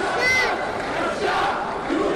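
Crowd chanting the Arabic slogan 'the people want to execute Assad', with a small child's high voice calling out the words early on and the crowd swelling louder near the end.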